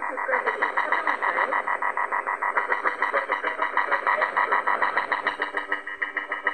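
Shortwave jamming heard through a portable radio's speaker on the 9405 kHz Voice of America Korean broadcast: a rapid, even pulsing buzz of about eight beats a second. It is the North Korean jammer transmitting over the station.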